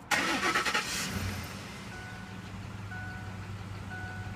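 Pickup truck engine cranking for under a second and catching, then settling into a steady idle. This is a starting-system test, and the cranking was read as normal. A short high beep starts repeating about once a second midway.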